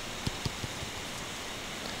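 Steady hiss with a few faint short taps in the first second: a stylus tapping on a tablet screen while a dashed line is drawn.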